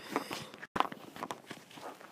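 Faint, irregular knocks and clicks, with a brief cut to total silence just under a second in.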